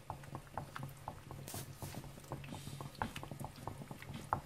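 Wooden spatula stirring melted chocolate and cream in a bowl, with irregular small clicks and scrapes as it knocks against the bowl's sides, over a steady low hum.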